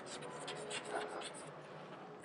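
Chalk writing on a chalkboard: a run of faint, short scratchy strokes as a word is chalked.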